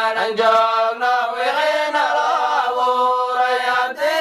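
A solo voice chanting an Islamic devotional song (nasheed) in long held notes that waver and glide between pitches.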